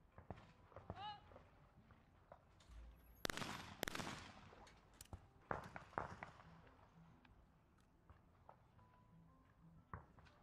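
Two trap-shotgun shots about 0.7 s apart a few seconds in, each with a ringing tail, followed by a couple of sharp clicks.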